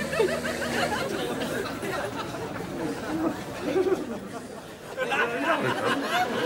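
Indistinct chatter of several people talking at once, with a low steady hum underneath that stops about a second in.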